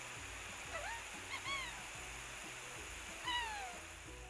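Water hissing steadily from a cartoon fire truck's hose spray, with three short, high, squeaky vocal calls from a small cartoon character, each rising and then falling in pitch; the last, about three seconds in, is the loudest.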